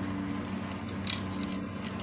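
PETLIBRO automatic pet feeder running between dispenses of dry food: a low steady motor hum with a few light clicks about a second in.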